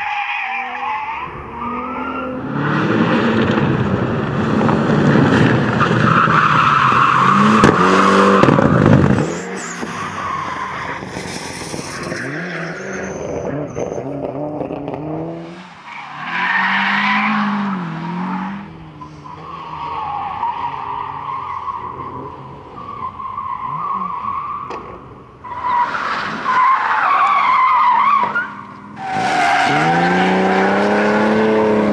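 Rally cars driven hard through track corners one after another. The engines rev high and drop back with gear changes, with tyres skidding as the cars slide. The loudest stretch is over the first ten seconds, and the sound breaks off abruptly several times as one car gives way to the next.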